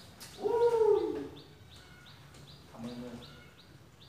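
A man's drawn-out hum that rises slightly and then falls, followed near the end by a few quiet spoken words. Behind it, faint high chirps repeat about two to three times a second.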